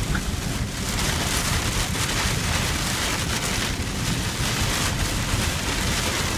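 Heavy rain pelting the roof and windshield of a truck, heard from inside the cab: a dense, steady hiss over a low rumble.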